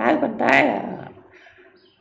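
A man's voice speaking a short phrase in Khmer that fades out after about a second.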